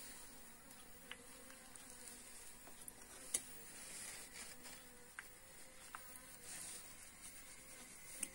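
A honeybee buzzing faintly in a steady hum, drawn to the freshly uncapped honeycomb, with a few faint sharp clicks.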